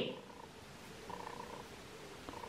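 A quiet room. A spoken word fades out at the very start, then there are only faint, short, even-pitched tones coming and going.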